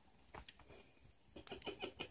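Faint short clicks and ticks from a budgie moving about on a metal fork: a couple early, then a quick run of about five in the second half.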